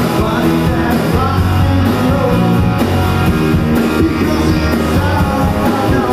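Rock music from a full band with electric guitar and drums, in a blues-rock style.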